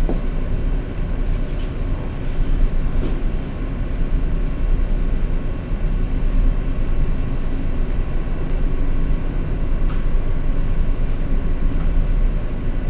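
Steady low rumble of room background noise, with a few faint scratchy strokes of a marker writing on a whiteboard.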